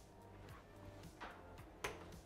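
Faint background music with a soft tick about a second in and one sharp click near the end.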